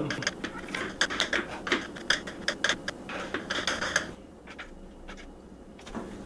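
Kitchen knife mincing garlic cloves on a cutting board: a fast run of blade taps that stops about four seconds in, with only a few faint taps after.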